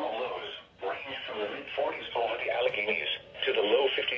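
Speech only: the NOAA Weather Radio broadcast voice reading the forecast, played through a weather radio receiver's speaker with the highs cut off.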